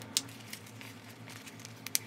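Snap fasteners on a clear plastic rain jacket being pressed shut as its hood is attached: two sharp clicks, one just after the start and one near the end, over faint crinkling of the plastic.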